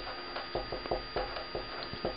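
A pen writing a short word on paper laid on a wooden table: a quick run of short pen strokes, scratches and ticks starting about a third of a second in.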